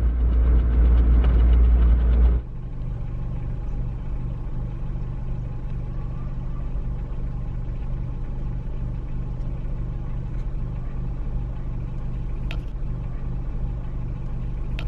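Car cabin noise while driving: loud low road and engine rumble that cuts off abruptly about two seconds in. Then a steady, quieter low engine hum of a stopped car idling, with a faint click near the end.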